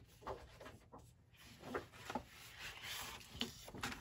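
Faint rustling and soft taps of paper sheets being moved and laid down on a tabletop.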